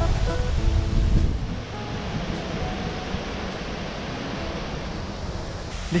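Steady rushing noise of wind and flowing water at a small concrete dam spillway, with wind buffeting the microphone in the first second or so. A few faint musical notes sound at the start.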